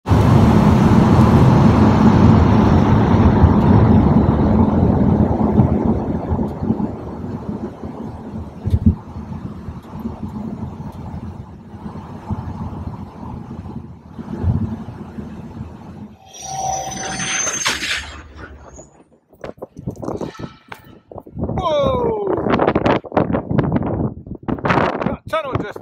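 Road noise of a vehicle driving through a road tunnel, loudest at the start and fading away over about eight seconds. Later come short whooshing, clicking sounds and falling pitch glides.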